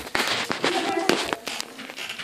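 A close rustling noise for about the first second, with a few sharp knocks and short bits of children's voices.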